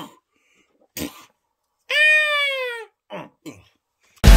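A couple of short coughs or grunts, then a high cry lasting about a second that rises slightly and falls in pitch, followed by two brief short sounds near the end.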